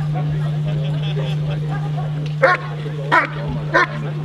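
German Shepherd barking at a helper hidden in a blind: the hold-and-bark phase of a protection routine. Three loud, sharp barks come about two-thirds of a second apart, starting a little past halfway through.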